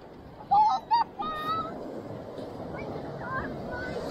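Minelab Equinox 800 metal detector sounding target tones as its coil is swept back over a target that reads 7 and 8: two short beeps that waver in pitch, then a longer, higher beep, all within the first second and a half. A few faint rising chirps follow later.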